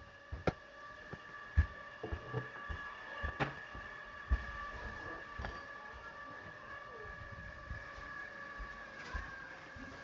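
A faint, steady whine held on several pitches at once, which the listener guesses is the washing machine running with its water; a few soft knocks sound over it.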